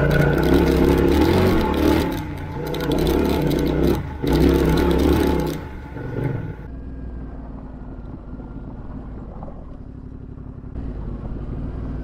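Yamaha Ténéré 700's parallel-twin engine pulling under throttle for about six seconds, with two short dips as the throttle is rolled off and back on. It then drops to a quiet low running, off the throttle, and picks up slightly near the end.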